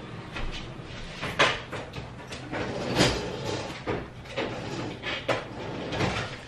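Someone moving about a kitchen: a few scattered knocks and clunks, about four in all, over a low steady background hiss.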